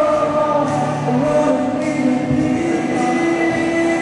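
Three male voices singing in harmony through microphones and a PA, holding long sustained notes that shift together as one chord.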